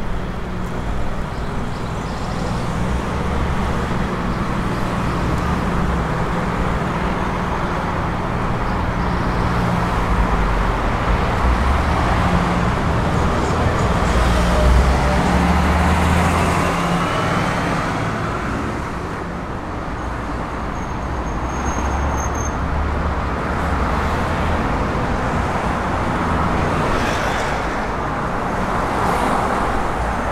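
Road traffic along a street: cars and other vehicles passing, a continuous low engine rumble over tyre noise that swells to its loudest about halfway through.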